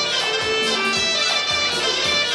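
Live Assyrian dance music: a sustained wind-instrument lead melody over a steady drum beat.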